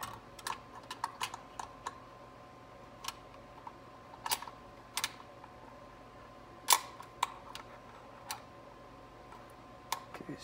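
Sharp metal clicks and taps, about a dozen at irregular intervals with the loudest about two-thirds of the way in, as the 4L60E's manual selector shaft is slid through the transmission case and the inside selector lever fitted onto it. A faint steady high hum runs underneath.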